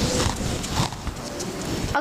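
Felt whiteboard duster rubbing across a whiteboard: an uneven scrubbing noise that eases off after about the first second.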